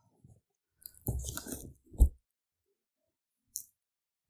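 A cardboard box being handled and shifted against a tabletop for about a second, with a crunching, scraping quality, then set down with a single sharp thump about two seconds in. A faint click follows near the end.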